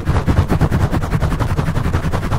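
Fingertips scratching fast and hard over a foam microphone cover, heard right at the microphone: a continuous run of quick scraping strokes, about ten a second, each with a deep bump from the handling.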